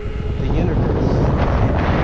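Wind buffeting the microphone of a camera riding along on a moving electric unicycle: a loud, steady, low rumble with no distinct strokes.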